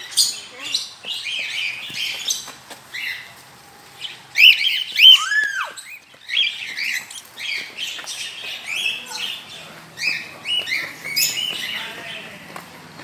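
Many birds chirping in quick succession, short arched chirps throughout, with a louder, lower call about five seconds in.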